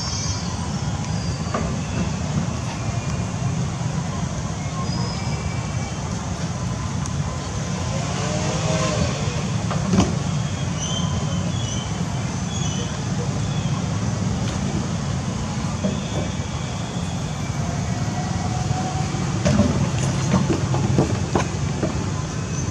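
A steady low rumble, with faint short high chirps now and then and a brief pitched call about eight to nine seconds in.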